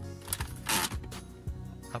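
Background music, with the plastic shift-lever trim panel of a Lexus IS350 centre console being pulled up out of its clips: a short plastic rasp about two-thirds of a second in, and a few light clicks.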